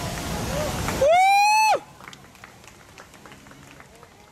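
Spectators cheering as the dancers bow. About a second in, one voice gives a single loud, high-pitched whoop that rises slightly and lasts under a second. Sparse clapping follows.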